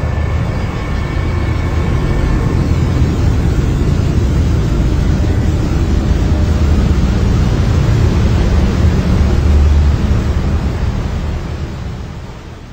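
Steady rushing of a large waterfall's water plunging into churning water below, strongest in the low end; it fades out near the end.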